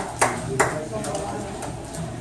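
A few scattered hand claps in the first second as brief applause dies away, followed by low room chatter.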